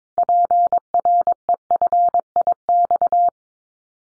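Morse code sent as a single steady beep at 22 words per minute: a run of short and long tones spelling one callsign prefix, lasting about three seconds and stopping cleanly.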